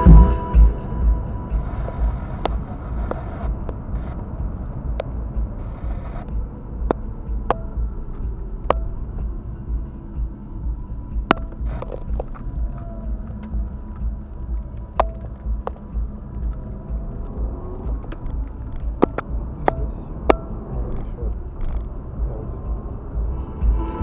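Low rumble of a car's cabin on the move, with scattered sharp clicks and ticks at irregular moments, under faint music.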